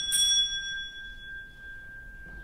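A small bell struck twice in quick succession, then ringing on with a clear tone that fades slowly, the higher overtones dying away first.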